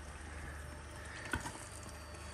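Thick stew simmering in a pot on an induction hob under a low steady hum, with a light knock about two-thirds of the way through as a spatula goes into the pot.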